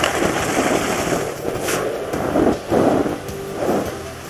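Ski-jumping skis running fast in the iced tracks of a ski jump's inrun, a steady crackling rush with wind on a helmet camera's microphone. The sound breaks briefly about two and a half seconds in, and grows quieter near the end as the jumper is airborne.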